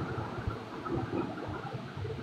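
Faint, steady background hiss and room noise, with no distinct sound.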